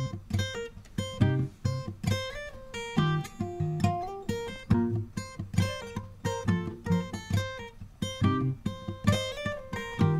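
Background music led by acoustic guitar, plucked and strummed notes in a steady rhythm.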